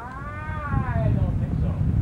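One long drawn-out vocal call, about a second and a half, rising and then falling in pitch, like a meow, over low street rumble.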